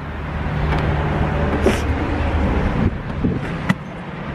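A car engine running close by, a steady low hum under a noisy haze, with a few sharp clicks, the sharpest near the end.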